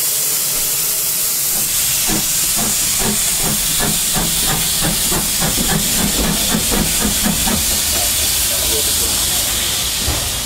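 Steam tank locomotive (J72 class 0-6-0T, no. 69023) pulling away under steam. Steam hisses steadily throughout, and exhaust beats start about two seconds in at three to four a second, then fade out near the end.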